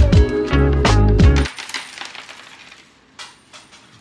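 Background music with a steady beat cuts off abruptly about a second and a half in, and a few coins then drop onto a desk, clinking and ringing as they settle, with another small clink near the end.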